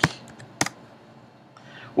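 Two computer keyboard keystrokes, one right at the start and one just over half a second in. The second is the last key of typing a search, with Enter submitting it.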